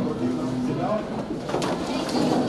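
Many children's voices talking over one another in a classroom, with a held low tone near the start.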